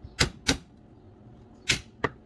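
A kitchen knife chopping garlic cloves on a wooden cutting board: three sharp strikes, two in quick succession near the start and one near the end.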